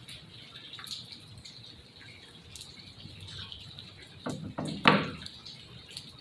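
Scattered drips of rainwater falling around a picnic shelter, with a few sharp clicks and knocks close by about four to five seconds in.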